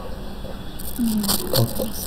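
A pause in the talk: steady low background hiss, with a brief faint murmur from a man's voice about a second in.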